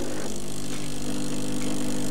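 Gaggia Anima Prestige bean-to-cup coffee machine's pump running with a steady hum, pushing fresh water through during the rinse stage of descaling.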